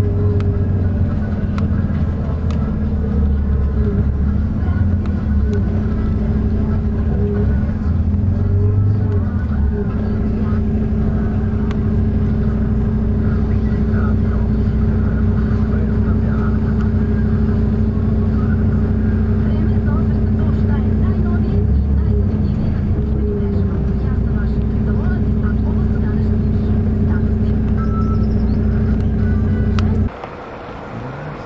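Steady engine drone heard from inside a moving vehicle, a low rumble under a held hum that briefly dips in pitch a couple of times.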